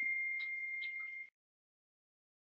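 A steady, high-pitched electronic tone, one unwavering pitch with a few faint clicks over it, that cuts off abruptly a little over a second in.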